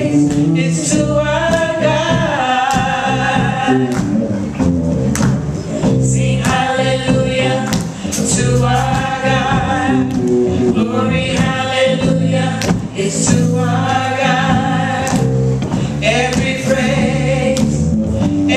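Live gospel song sung by a small group of voices on microphones, with held notes in long phrases, backed by keyboard and drums through the PA.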